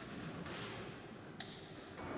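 Quiet room tone of a large hall with one sharp click about one and a half seconds in.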